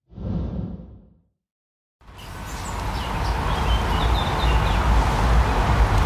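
A whoosh transition effect that dies away within about a second. After a second of silence, a steady outdoor ambience fades in: a rushing, wind-like noise over a low rumble, with a few short high chirps in the middle.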